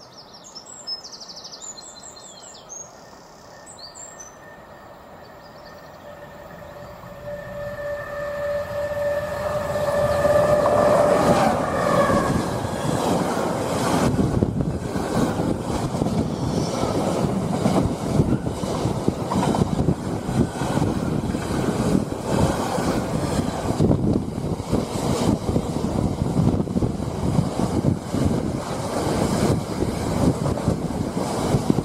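Class 70 diesel locomotive approaching and passing close by: its engine tone grows louder from about seven seconds and drops in pitch as it goes past. Then a long train of container wagons rolls by, wheels clattering steadily and loudly.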